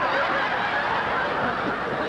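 Audience laughing, a steady wash of many voices for the whole pause between lines.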